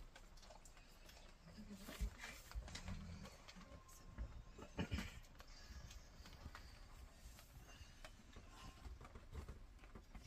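Two dogs interacting muzzle to muzzle: faint low grunts and snuffling, with a few short knocks, the sharpest about two and five seconds in.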